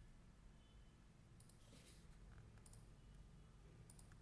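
A few faint computer mouse clicks, made while selecting curves in the CAD program, over near-silent room tone.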